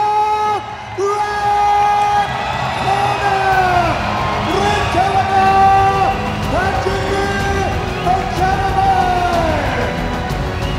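A man's voice calling in long, drawn-out sing-song notes, each held and then falling away at its end, over a steady low music bed.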